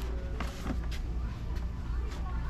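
Steady low rumble of background noise with a few light plastic clicks from a blister-packed action figure being handled.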